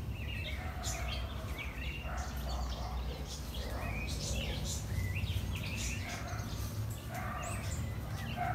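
Wild birds singing: a string of short chirps and whistled glides, with a lower repeated call every second or two. A steady low background rumble runs underneath.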